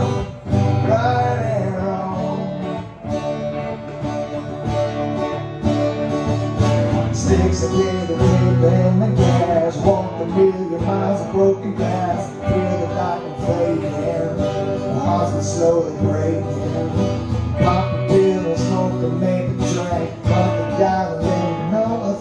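Electric guitar and strummed acoustic guitar playing a country song live.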